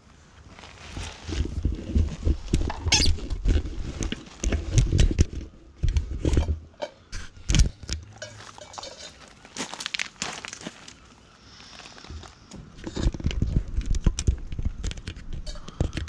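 Handling noise on the camera's microphone: uneven rumbling with scattered clicks and knocks as the camera is picked up and moved. Camping gear and stones clatter on pebbles at the same time.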